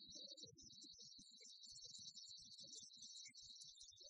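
Near silence: only faint, garbled background noise.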